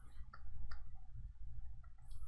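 A few faint computer mouse or keyboard clicks, a couple of them close together about a third of a second in, over a steady low hum.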